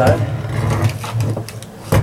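Shotgun parts being handled and set down on a workbench, ending in one sharp knock as a part hits the bench just before the end.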